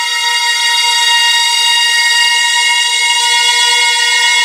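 Synthesized drone for a logo intro, one held pitch rich in overtones, growing slightly louder in the first second and then staying level.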